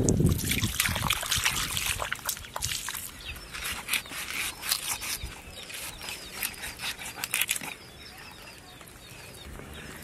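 Wet squelching and crackling of hands pulling the innards out of a large billfish's opened belly, a dense run of sticky clicks that dies down after about eight seconds.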